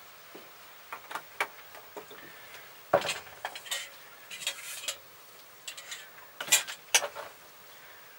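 Scattered clinks, knocks and scrapes of cookware being handled: a cast iron frying pan, bowls and utensils. The sharpest knock comes about three seconds in, and two more come near the end.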